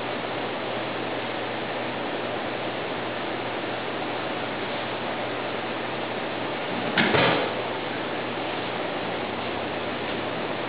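Steady background hiss, broken about seven seconds in by one short thump: a person landing on the dojo mat in a drop throw.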